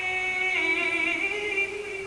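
A woman's voice singing slow, long-held notes without visible accompaniment. About half a second in, the held note gives way to a slightly higher one.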